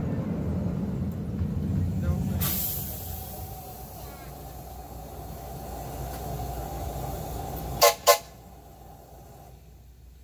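Two short blasts of a locomotive whistle about eight seconds in, the loudest sound here, over the low rumble of the moving train, which fades after about three seconds.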